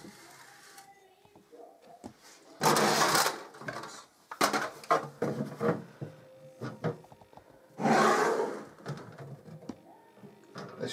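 Hands working at a wooden-framed, glass-sided dough prover cabinet: two loud, harsh noises of about a second each, about three and eight seconds in, with a few knocks and clatters between.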